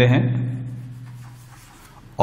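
Chalk scratching on a blackboard as a word is written: a run of short, faint strokes.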